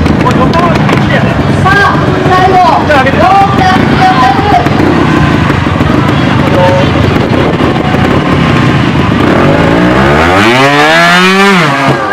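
Trials motorcycle engine running, then revved hard near the end, rising steeply in pitch for about two seconds before falling away: the rider winding it up to climb a tall wooden box obstacle.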